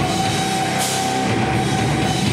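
Live heavy rock band playing: distorted electric guitars, bass and drum kit, with one note held through most of it and a cymbal crash a little under a second in.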